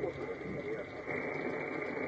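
Shortwave receiver static from an RTL-SDR Blog V3 tuned to the 40-metre amateur band: a steady hiss cut off above about 2.5 kHz, with a faint voice barely coming through. The hiss brightens about a second in. The band is noisy, with some interference.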